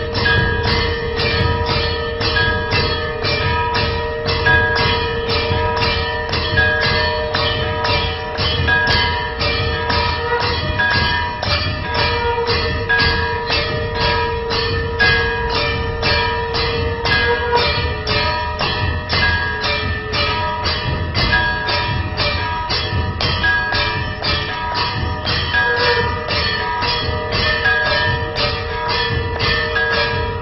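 Temple bells rung rapidly and steadily for aarti, about three strokes a second, their ringing tones carrying on between strokes, with a deep rumble underneath.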